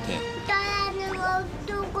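A young child singing a repetitive sing-song chant, held notes stepping between a few pitches.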